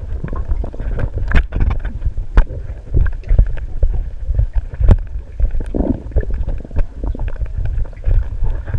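Muffled underwater sound of pool water heard through a GoPro's waterproof housing: a steady low rumble of water moving against the camera, with scattered sharp clicks and knocks.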